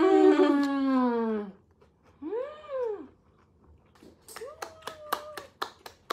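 A woman's long, falling hummed 'mmm' of delight at the taste of food, then a shorter rising-and-falling 'mm' about two seconds in. Near the end come quick hand claps, about ten in two seconds, over another held hum.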